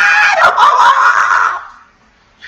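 A man's high-pitched squeal of mock giddy delight, held and then turning breathy and fading out about a second and a half in.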